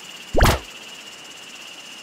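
A single short swish about half a second in, quickly rising in pitch, over a steady background hiss with a faint high whine.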